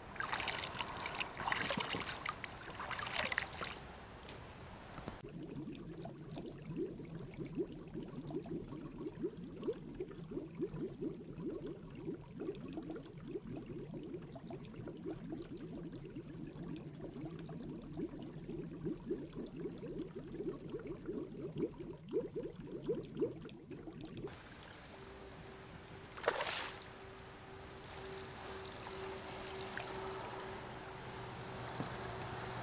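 Muffled water sound through a submerged camera's microphone: a low rumble with dense fine crackling and gurgling. It follows a few seconds of brighter, louder noise at the start.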